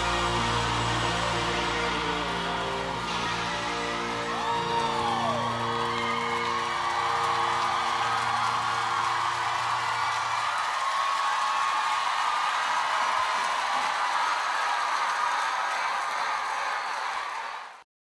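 A live band of keyboard, guitars, bass and drums holds its final chord for about ten seconds under audience cheering and whoops. After the chord stops, only the crowd cheering and clapping goes on, fading out just before the end.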